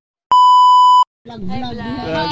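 A single loud, steady electronic beep tone lasting under a second, cut off sharply, then voices talking from a little over a second in.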